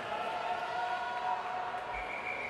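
Background murmur of distant voices and crowd in a large indoor pool hall, with a few faint steady tones.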